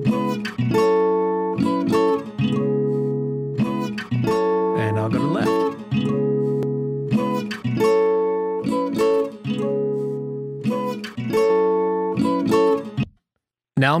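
Recorded guitar playing strummed chords, being panned toward the right so that the left channel's level is lowered. The playing stops about a second before the end.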